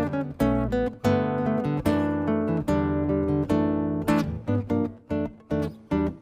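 Solo acoustic jazz guitar played fingerstyle, chords and bass notes together, the chords struck in a quick rhythmic pattern.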